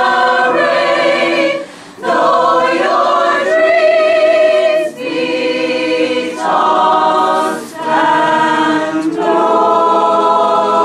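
Mixed-voice choir singing unaccompanied in held chords, phrase after phrase, with brief breaks about two, five and eight seconds in.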